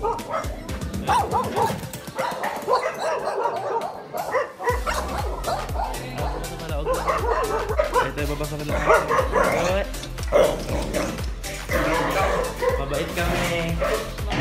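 A dog barking again and again, warning off people trying to come in at the door, over background pop music with a steady beat.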